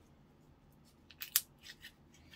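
Slime being stretched and pressed by hand, giving a quick run of sticky clicks and pops about a second in, one louder pop in the middle of them.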